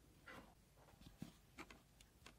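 Near silence: faint room tone with a few soft ticks of fingers handling a cork and a small metal jig.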